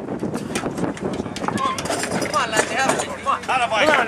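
Repeated metallic clanks and knocks of hand tools and tractor parts being worked on, with voices talking and calling out, the voices growing stronger about halfway through.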